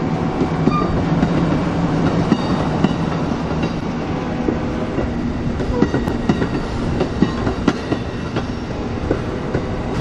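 Amtrak Superliner bilevel passenger cars rolling past: a steady rumble of steel wheels on rail, with irregular sharp clicks from the wheels passing over the track. These come more often in the second half. A low hum fades out over the first few seconds.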